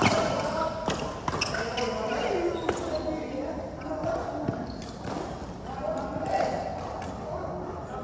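Badminton rackets striking a shuttlecock a few times in the first few seconds as a rally plays out, with footfalls on a wooden court floor, heard in a large sports hall.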